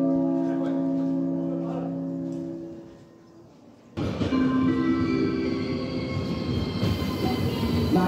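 Station public-address chime: a held chord of several notes that fades out over about three seconds. About four seconds in, train noise cuts in suddenly, with a steady metallic whine over rumbling.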